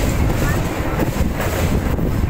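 Passenger train running past below, heard as a steady low rumble, mixed with heavy wind buffeting on the microphone.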